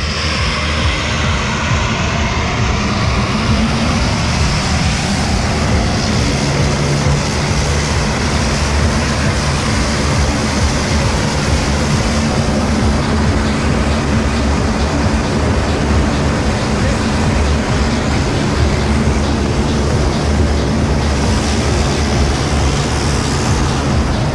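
Single-engine turboprop jump plane running steadily close by, a loud, even engine and propeller noise with a low hum underneath.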